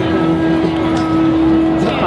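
Marching crowd: people talking among themselves, with a long steady low note held underneath that stops abruptly near the end.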